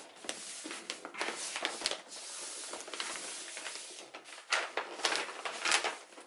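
Wrapping paper rustling and crinkling as it is folded and pressed around a gift box, with a run of louder, sharper crackles near the end.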